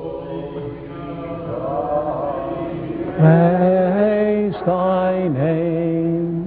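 Slow chanted singing in long held notes. It swells louder about three seconds in, and the pitch dips briefly between phrases.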